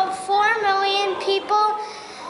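A child's high-pitched voice with drawn-out, held notes in a sing-song manner.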